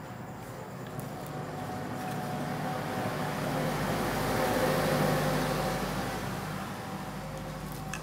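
A Mitsuba 12 V 500 W brushless DC motor running unloaded on its controller, humming steadily and quietly, smooth because it has no brushes and no reduction gear to make noise. Its whir swells through the middle as the speed knob is turned, then eases off, with a faint click near the end.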